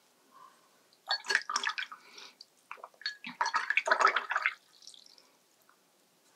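Paintbrush being swished and knocked about in a glass jar of rinse water, in two bouts of splashing and small clinks against the glass.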